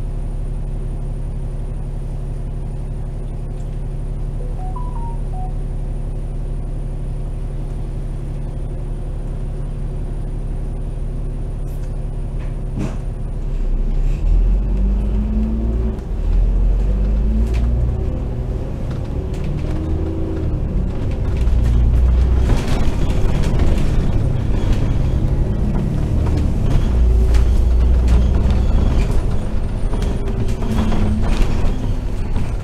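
Double-decker bus engine, heard from the upper deck: it idles with a steady low hum at a standstill, then about 14 seconds in the bus pulls away. The engine grows louder and rises and falls in pitch several times as it accelerates through the gears.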